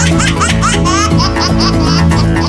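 A dubbed, high-pitched laughing voice: a rapid string of short, squeaky rising 'ha' notes, several a second. Music with steady sustained bass notes plays underneath.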